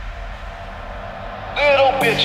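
Club dance music in a DJ mix: a quiet stretch with only a low bass, then a pitched vocal line over steady synth chords comes in loudly about one and a half seconds in.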